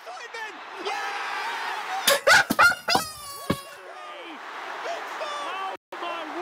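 Football stadium crowd noise with a commentator's voice over it. About two seconds in, a few sharp knocks come, then loud excited shouting as a goal goes in. The sound cuts out for a moment just before the end.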